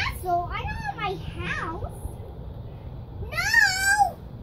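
A toddler's high, squeaky voice babbling into a toy phone in pretend talk, without clear words: a few short sounds that bend up and down in the first two seconds, then a longer, louder high call that rises and falls near the end.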